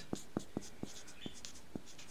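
A dry-erase marker writing letters: the felt tip makes a run of short strokes, about seven light ticks in quick succession with a faint scratchy hiss between them.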